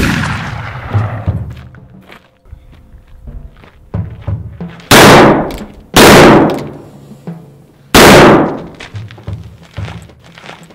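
Three revolver shots fired into the air, two a second apart and the third two seconds later. Each is very loud, with a long echoing tail.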